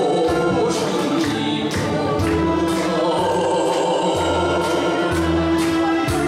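A man singing a Korean trot song into a microphone, with a steady drum beat and bass line in the accompaniment.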